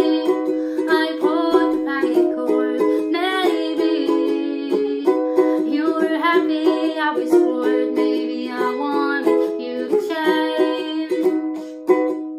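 Ukulele strummed in a steady rhythm of chords, played with a capo.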